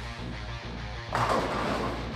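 Bowling pins crashing as a urethane bowling ball strikes them about a second in, over background music.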